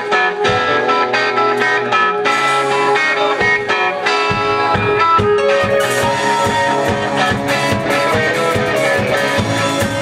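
Live rock band playing, electric guitars to the fore over drums; the drumming turns into a steady, busier beat with cymbals about four seconds in.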